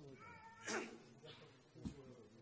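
A faint, short, high-pitched call with a wavering pitch, like a mew, followed by a short burst of hissing noise, a weaker one, and a soft knock near the end.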